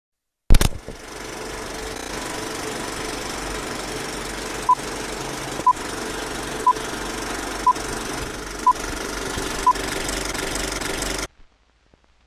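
Film projector running with a steady rattle and crackle under a countdown leader, with six short beeps one second apart marking the count. It starts with a sharp click and cuts off suddenly near the end.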